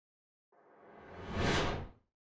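Whoosh sound effect for an animated logo intro: a rushing swell that builds from about half a second in, peaks, then cuts off just before the end.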